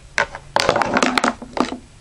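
Cue stick jabbed into a pocket of a miniature pool table to free a stuck ball: a click, then a quick run of knocks and scrapes from about half a second in to about a second and a half.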